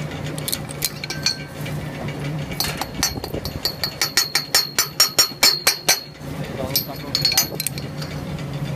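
Steel chain of a scaffold chain hoist clinking in a quick run of sharp metallic clicks, about four or five a second, from about two and a half seconds in to about six seconds, with a few more near the end. A low steady hum runs underneath at the start and end.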